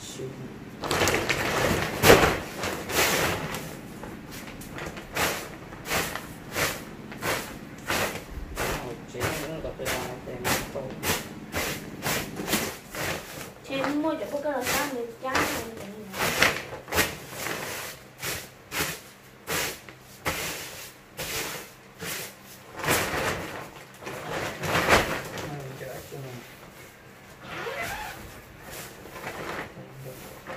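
Soft grass broom sweeping a concrete floor in short, quick strokes, about two a second, with a few louder clusters of strokes.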